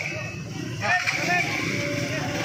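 Indistinct voices a short way off over a steady low engine rumble.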